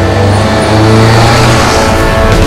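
A car engine accelerating hard as the car speeds away, over a steady music score.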